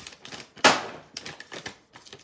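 A run of small clicks and knocks from objects being handled on a worktable, with one louder, sharp knock a little over half a second in and a few lighter clicks after it.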